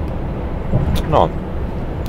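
Steady low drone inside the cab of a Volvo FH truck driving at motorway speed, with a short click about a second in.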